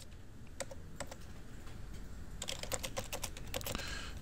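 Typing on a computer keyboard: two separate keystrokes in the first second, then a quick run of keystrokes in the second half.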